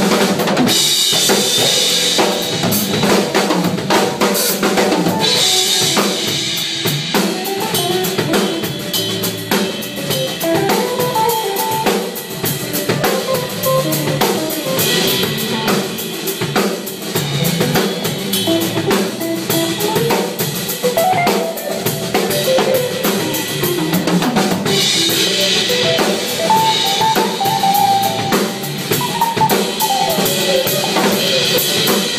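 Odery drum kit played in a continuous, busy groove: dense bass drum and snare hits, with crash cymbals washing in near the start, around five seconds in, midway and near the end.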